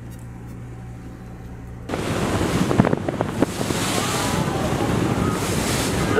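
A low steady hum, then about two seconds in a sudden cut to loud wind buffeting the microphone over sea noise aboard a boat.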